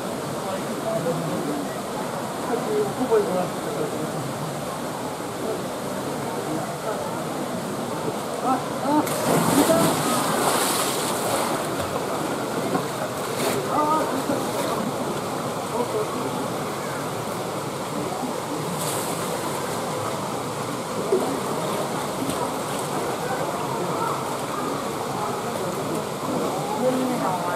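A polar bear plunging into its pool with a loud splash about nine seconds in, followed by water sloshing and a couple of shorter splashes, over the steady chatter of a crowd of onlookers.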